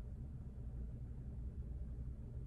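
Quiet room tone with a steady low hum and no distinct sound events.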